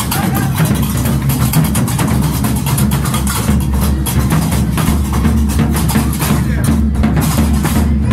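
Gnawa percussion: iron qraqeb castanets clacking rapidly over the beat of a large tbel drum.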